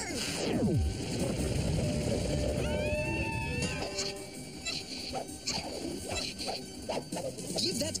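Cartoon soundtrack of music and sound effects: a tone sliding steeply down in the first second, then a low rumble, with background music running on.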